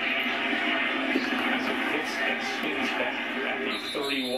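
A television playing a college football broadcast, heard through its speaker: a continuous wash of crowd noise with indistinct voices. Near the end it changes to clearer pitched sounds like music or a voice.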